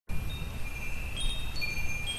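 Chimes ringing: several high, clear tones that overlap and die away in turn, over a steady low rumble.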